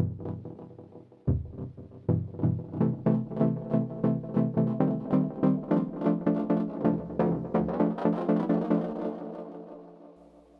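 FXpansion Cypher2 software synthesizer playing a chord preset: a struck chord decaying, then from about a second in a held chord with a rhythmic run of quick repeated notes over it, fading out near the end.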